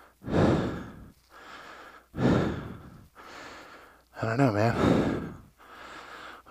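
A man breathing heavily: three strong exhales about two seconds apart, each followed by a quieter inhale. The last exhale is voiced, like a sigh.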